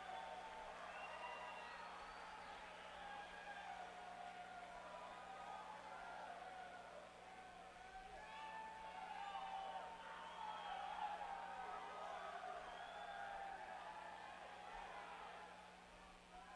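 Concert audience between songs, faint: many voices shouting, whooping and chattering over one another, over a steady low electrical hum.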